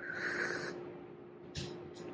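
A short slurp as a sip of hot espresso is drawn from a small cup, lasting under a second, followed by a soft mouth click about a second and a half in and another just before the end.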